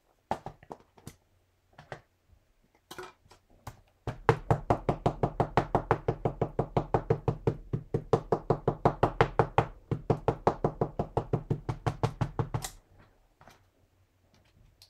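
White pigment ink pad dabbed rapidly onto a rubber stamp, knocking in a quick, even run of about five taps a second for some eight seconds. A few scattered handling clicks come before it.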